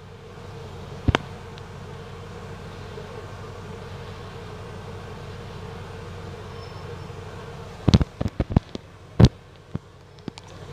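Steady hum and rumble of a bus in motion, heard from inside. There is one sharp knock about a second in and a quick run of loud sharp knocks and rattles near the end.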